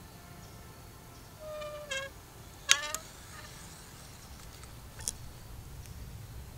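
Two short pitched calls about a second apart, the second louder and dropping slightly in pitch, over a faint outdoor rumble, with a faint click near the end.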